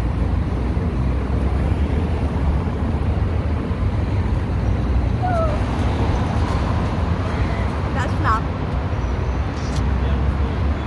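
Steady rumble of road traffic under an overpass with wind buffeting the microphone, and a few brief voice fragments about halfway through and again around eight seconds in.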